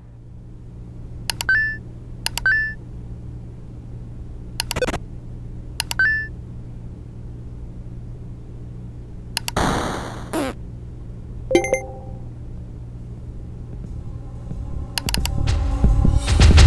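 Cartoon computer sound effects: a few mouse clicks, most followed by a short high beep, over a low steady computer hum. About ten seconds in comes a noisy burst as a mine tile is hit and the game is lost, then a short electronic chime.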